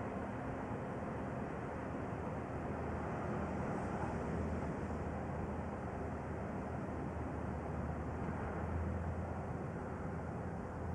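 Steady outdoor background noise: an even low rumble with a soft hiss over it, unbroken throughout, the low rumble swelling slightly near the end.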